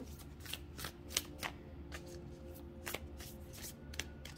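A deck of Moonology manifestation oracle cards being shuffled by hand, heard as a quiet run of short, irregular card clicks and slaps.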